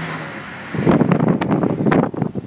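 A steady hiss, then about a second in a loud rumbling and crackling on a phone's microphone, the sound of the mic being buffeted or handled.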